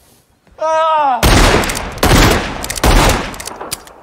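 Film gunfire from a revolver: a man's short cry, then loud shots with a long ringing echo. The first shot comes about a second in and another near three seconds.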